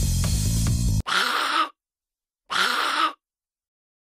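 Background music with bass guitar that cuts off suddenly about a second in, followed by two identical short sound effects, each about half a second long, the second a second and a half after the first.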